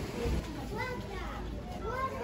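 High-pitched voices chattering from about a second in, over a steady low rumble.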